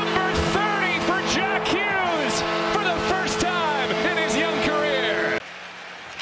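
Arena goal horn sounding a loud, steady multi-tone chord after a home goal, over a cheering crowd full of whoops and whistles. The horn and cheering cut off abruptly about five seconds in, leaving quieter arena crowd noise.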